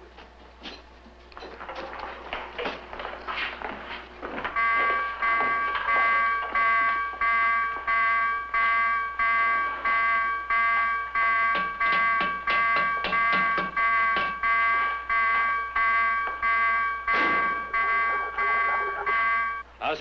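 Submarine's general alarm sounding for battle stations: a pulsed, ringing electric alarm at about one and a half beats a second. It starts about four seconds in, after some clatter of men moving, and stops just before the end.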